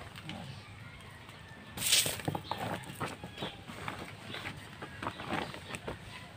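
Woven plastic feed sack rustling and crackling as it is handled. There is one loud, sharp rustle about two seconds in, then a run of short crackles.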